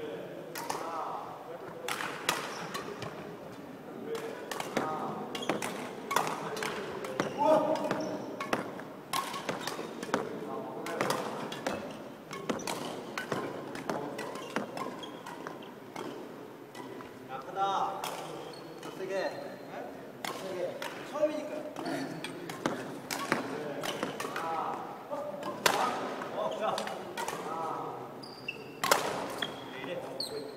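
Badminton rackets striking shuttlecocks in a coach's multi-shuttle feeding drill: sharp strikes come irregularly, about one or two a second, with voices in the background.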